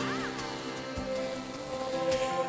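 Live band playing the intro of a pop song: sustained keyboard chords with a short high glide near the start and a low drum thump about a second in.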